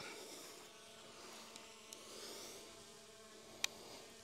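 RUKO F11GIM2 quadcopter drone hovering high overhead: a faint, steady propeller buzz with a slowly wavering high whine. One sharp click comes about three and a half seconds in.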